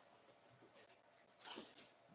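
Near silence: room tone, with one faint, brief sound about a second and a half in.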